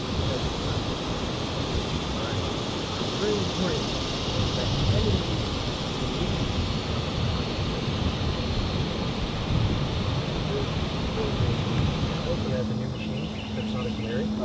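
Steady outdoor background noise with faint far-off voices. A steady low hum comes in near the end.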